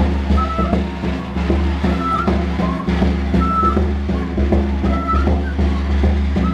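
Andean carnival music: a small wooden flute plays short, repeated high phrases over a steady beat of caja frame drums.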